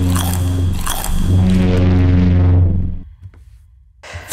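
Popcorn being chewed and crunched in loud bites, over a low, steady droning tone. Everything fades away about three seconds in, leaving near silence.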